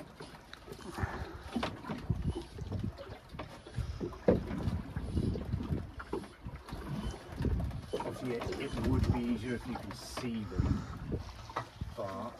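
Wind buffeting the microphone and waves slapping against the hull of a small drifting boat, in irregular low surges.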